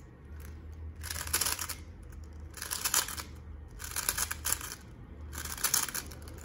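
A 3x3 plastic speed cube being turned by hand through an algorithm's sequence of face and slice moves. It makes four quick bursts of clicking and clacking, each a short run of turns.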